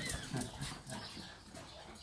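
Dogs making a few short sounds in the first second, then quieter.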